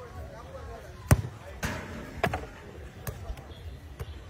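Soccer balls being kicked: several sharp thuds, the loudest about a second in.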